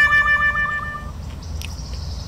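A woman's long, high hum, held on one pitch with a slight wobble while she chews a mouthful of fried chicken. It stops about a second in, leaving a low outdoor rumble with a couple of faint clicks.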